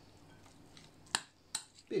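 A metal spoon clinks twice against a glass salad bowl, about a second in and again half a second later, as mayonnaise is about to be mixed into a diced salad.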